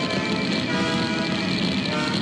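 Orchestral cartoon score playing with many notes held together and no pauses.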